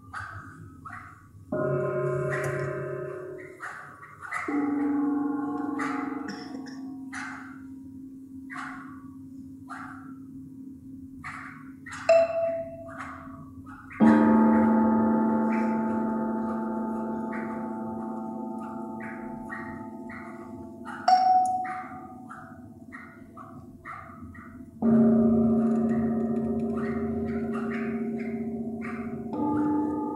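Tuned gongs struck one at a time, each stroke ringing on for several seconds with several pitches and slowly fading; the strongest strokes come about halfway through and again near the end. Between them come scattered short, sharp ticks from small tuned metal discs struck with sticks.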